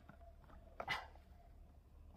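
A quiet, brief crackle of dry leaves and mushroom stems about a second in, as a clump of porcini (ceps) is twisted out of the forest floor by hand.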